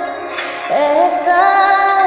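A woman singing a slow Hindi song melody. A wavering held note fades out shortly after the start, and a new phrase begins with an upward slide a little under a second in.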